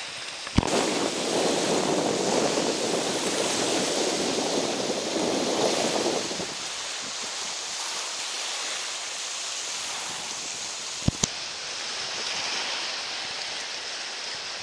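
Steady rushing of wind on the microphone over open water, louder for about the first six seconds. Sharp clicks cut through it about half a second in and twice close together about eleven seconds in.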